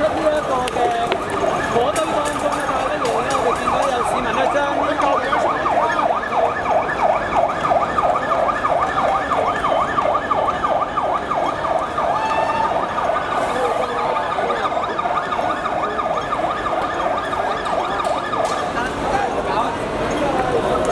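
Emergency vehicle siren sounding a fast warble for about ten seconds, fading after two-thirds of the way through, over the noise of a crowd in the street.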